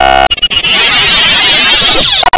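Loud, harsh digitally distorted audio. A choppy, stuttering tone plays for about the first half second, then gives way to a dense wash of noise across the whole range.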